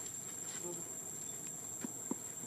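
Steady, high-pitched drone of an insect chorus, with a soft click near the end.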